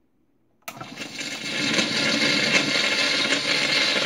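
A phonograph needle dropping onto a 78 rpm shellac record about half a second in, then the steady hiss and crackle of the disc's surface noise in the lead-in groove, swelling over the first second.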